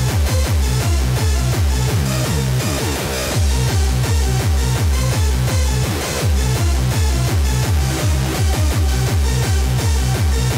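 Electronic dance music playing in a DJ mix: a fast techno-style track with a steady kick drum and heavy bass. A short sweep in pitch comes about three seconds in and again near six seconds, with a slight dip in the beat.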